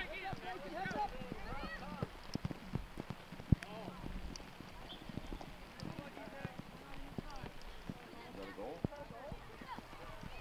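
Distant voices and shouts of players and spectators at an outdoor youth soccer game, strongest near the start and again near the end. Under them come scattered taps and thuds of feet and ball on the grass, with one sharp thud a few seconds in.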